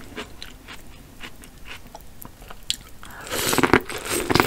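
Close-miked chewing with small wet mouth clicks. About three seconds in comes a louder, crunchier run of noise as teeth bite into a piece of corn on the cob.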